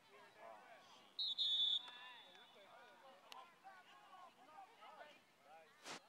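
Referee's whistle blowing one short, high-pitched blast about a second in, broken by a brief gap, signalling the play dead. Faint voices of onlookers talk underneath.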